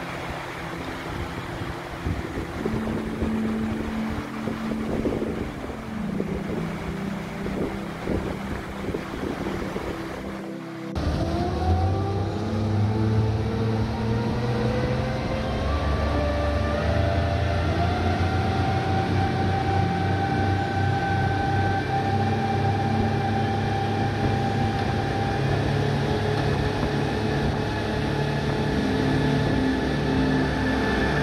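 Twin outboard motors on a speedboat, with wind and rushing water. About eleven seconds in the sound changes suddenly and the engine pitch climbs as the boat accelerates, then holds steady at cruising speed. Before that, a quieter, steadier engine drone and wind.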